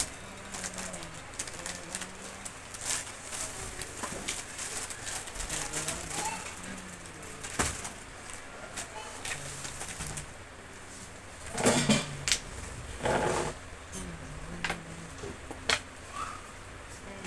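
Low, repeated cooing of a pigeon. Two loud noisy bursts come about three-quarters of the way through.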